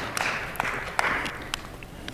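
Congregation applause tapering off, thinning out to a few scattered claps.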